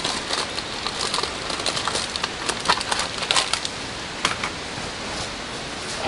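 Light crackling and scattered clicks of a pack of mosquito coils being handled, over a steady background hiss.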